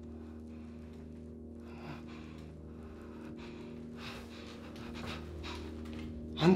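A man panting heavily, his breaths coming faster and louder in the second half, about two a second, over a low steady drone.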